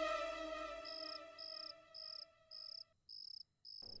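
A cricket chirping in short, evenly spaced trills, about one every three-quarters of a second, six in all, while a sustained music chord fades out underneath.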